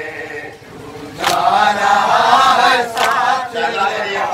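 A lead reciter and a group of men chanting a nauha, a Shia lament, in unison, the voices dropping briefly and then swelling loud about a second in. Two sharp hand slaps of chest-beating (matam) fall in time with the chant, nearly two seconds apart.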